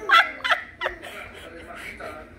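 A toddler's short, high-pitched vocal squeaks: three brief sliding sounds in the first second, the first the loudest.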